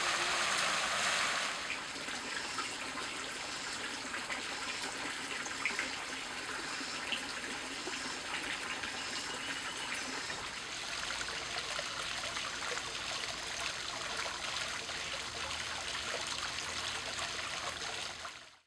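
Fountain water splashing steadily into a pool, louder for the first second and a half, then a softer steady trickle and splash of water jets arcing from frog-statue spouts into a stone basin.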